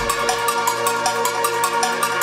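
Electronic music: fast, even ticks of about seven a second over several held synth tones and short pitched blips, with a deep bass note dying away in the first half second.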